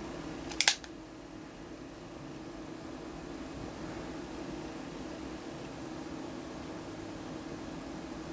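Hammer of a Ruger New Model Single Six .22 single-action revolver being thumbed back: a quick double click less than a second in.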